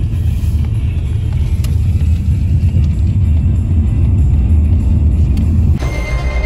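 Steady low rumble of a car driving, heard from inside the cabin, with background music under it.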